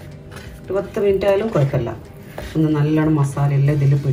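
Speech: a person talking in short phrases, with brief pauses before the first phrase and around two seconds in.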